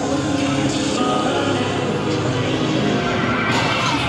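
Loud, steady droning soundtrack of a haunted-house maze: layered sustained tones like synth music, with no break.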